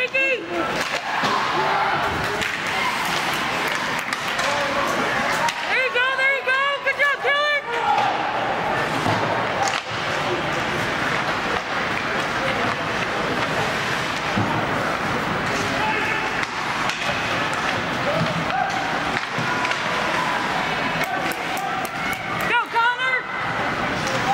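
Ice hockey play heard from the stands: skates scraping and sticks and puck clacking on the ice under the steady chatter of spectators in the rink. Twice, about six seconds in and again near the end, someone gives a string of quick high-pitched cries.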